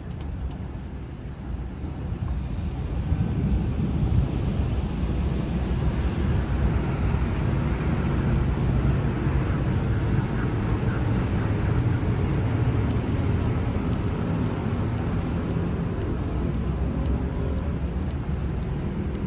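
Wind buffeting the microphone: a steady, noisy low rumble that grows louder about three seconds in and stays up.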